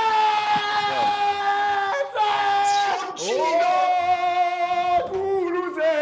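A man yelling long, drawn-out goal cries in celebration of a goal, three held shouts of about two seconds each, the last a little lower in pitch.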